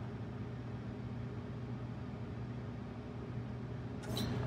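John Deere 70 Series combine's engine running at low idle, a steady even hum heard inside the closed cab.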